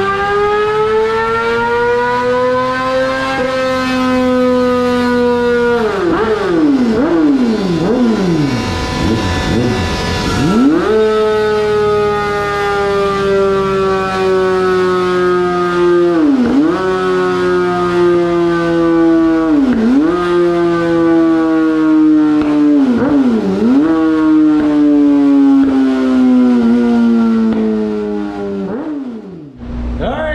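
2020 Yamaha R6's inline-four revving hard on a chassis dyno through a homemade, modified stock exhaust. The engine climbs over the first few seconds and swings up and down rapidly several times about six to ten seconds in. It then holds high revs with its pitch slowly sagging and dipping briefly three times, before dropping off near the end.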